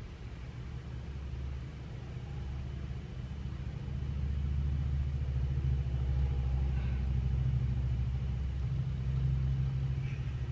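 A low, steady droning rumble that grows louder about four seconds in and then holds.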